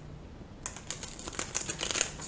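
Tarot cards being shuffled by hand: a quick run of crisp card clicks and flicks, starting about half a second in.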